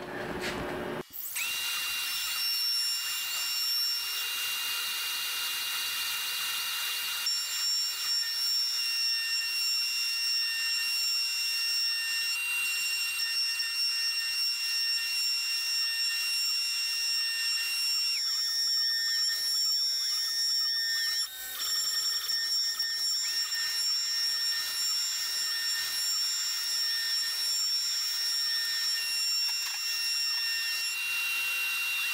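A CNC router's spindle runs with a high-pitched whine while the bit cuts a circular pocket in wood, and a shop vacuum draws through a nozzle beside the cutter. A little past the middle, the steady whine wavers for a few seconds, then settles again.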